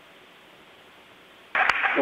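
Steady hiss of static on a radio-like audio feed, then a man's voice breaks in loudly near the end, with a sharp click just after it starts.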